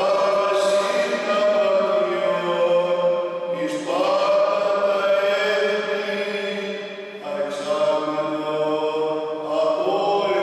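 Greek Orthodox priest chanting the Gospel reading solo in Byzantine recitative. He holds long, steady notes in phrases a few seconds long, with brief pauses for breath about four, seven and nine and a half seconds in.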